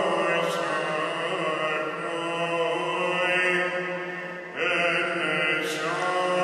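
Greek Orthodox Byzantine chant: a single voice holding long, slowly moving notes, with a new phrase starting about four and a half seconds in.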